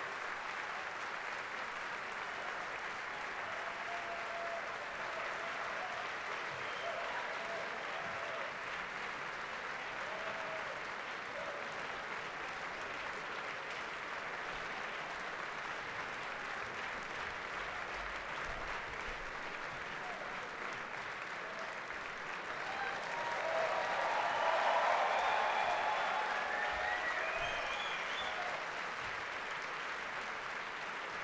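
Concert-hall audience applauding steadily. The applause swells louder about three quarters of the way through, with cheers rising above it.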